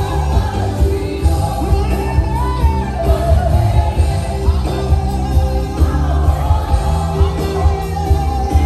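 Live gospel choir and band performing: lead and choir voices singing in Kinyarwanda over a steady beat with strong bass.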